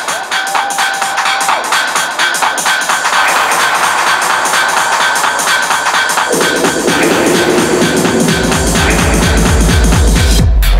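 Electronic dance music from a club DJ set, played loud: fast, even percussion with the deep bass missing at first. A lower bass line enters about six seconds in, and heavy deep bass returns near the end.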